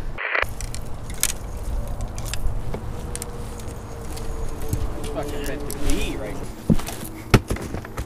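Handling noise from fishing rods and gear being picked up and set down, with two sharp knocks near the end, over a steady low rumble on the body-worn camera's microphone and a faint hum underneath.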